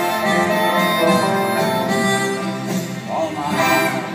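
Live instrumental passage of a slow ballad, played by a band with a full orchestra: a held melody line over sustained chords, heard from far back in a large open-air amphitheatre.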